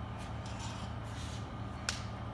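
Rubber-coated weight plate being lifted off the floor and handled, with faint shuffling and one sharp click near the end, over a steady low hum.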